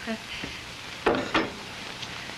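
Hot coffee poured from a pot into a cup under a steady hiss, with a short voice sound about a second in.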